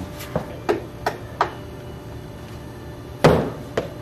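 A few short, sharp knocks, then a louder crack with a brief echo about three seconds in, sounding in a hard-walled cinder-block corridor.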